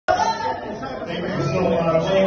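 Several people talking at once in a small room, voices overlapping.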